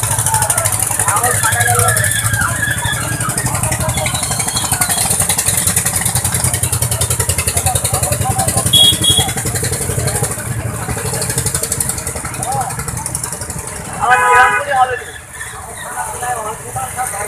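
Vehicle engines running steadily on a road, under overlapping voices. A short, loud pitched sound stands out about two seconds before the end.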